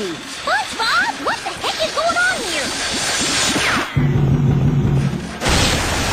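Cartoon sound effects: a run of squeaky rising and falling whistle-like glides, a low steady hum about four seconds in, then a loud crash near the end as a character skids into the ground.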